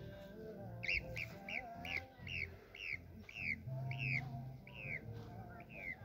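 Background music with a bird's repeated call over it: about a dozen short, falling chirps, roughly two a second, starting about a second in.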